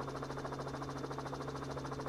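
A steady low hum with a faint buzz, with no speech over it.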